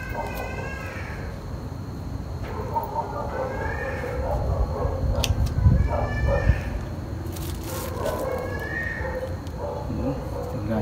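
Chickens calling three times in the background. Meanwhile a hand tool scrapes and rakes soil out of a bonsai's root ball, with a few knocks, loudest in the middle.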